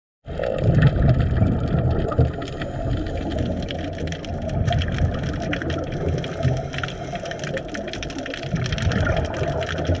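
Muffled underwater noise picked up by a submerged camera: a steady low rumble with many faint scattered clicks and crackles.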